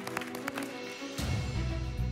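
Background music: sustained chords with a light ticking beat. A deep bass note comes in about a second in.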